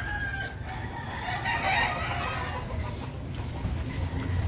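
A rooster crowing, heard over a steady low rumble of street noise.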